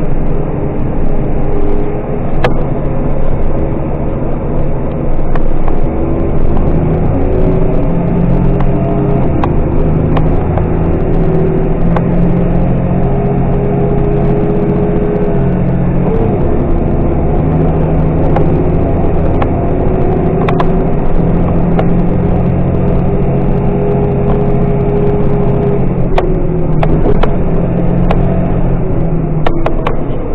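Diesel engine and drivetrain of a large farm machine running under load, heard inside its cab as it crosses a harvested corn field. It is a steady drone with humming tones that shift in pitch now and then, and scattered sharp ticks.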